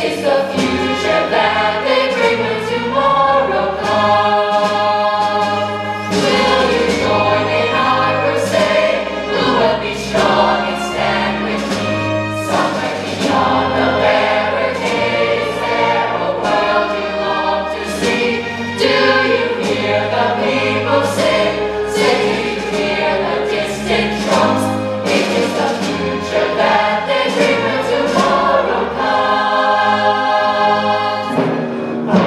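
A choir of voices singing a musical-theatre ensemble number over instrumental backing, continuous and loud.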